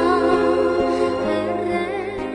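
A woman singing a Mongolian song into a microphone, holding notes with vibrato over a steady instrumental backing.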